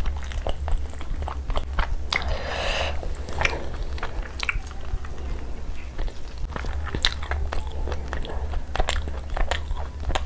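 Close-miked chewing and biting of tandoori chicken, full of wet mouth sounds and many short sharp clicks. The meat is torn apart by hand partway through. A steady low hum runs underneath.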